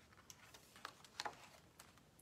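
Faint paper handling as a picture book's page is turned: a few small, short ticks and rustles over near-silent room tone.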